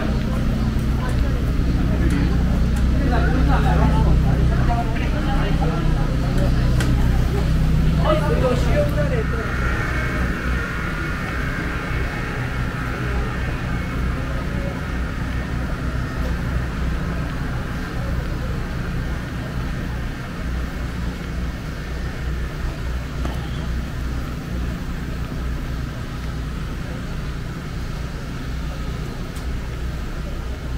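Outdoor street ambience: people talking and a steady low hum. About ten seconds in, the voices fade and a steady higher-pitched drone comes in.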